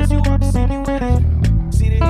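Ibanez BTB seven-string electric bass played as two layered parts: a low sustained bass line under a higher plucked melody line.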